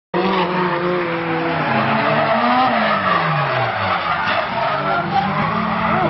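Drift cars sliding with tyres screeching continuously while their engines rev, the engine notes rising and falling, one dropping in pitch about halfway through.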